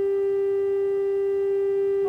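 Instrumental music: a single note held steadily, without fading.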